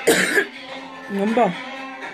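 A woman coughs once, sharply and loudly, then makes a short voiced sound about a second later.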